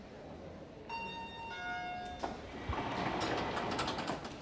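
Elevator arrival chime, two notes, high then low, followed by a click and the elevator doors sliding open.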